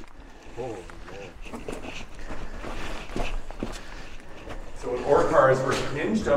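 Footsteps, with a faint voice early on, then a man speaking close up for about the last second.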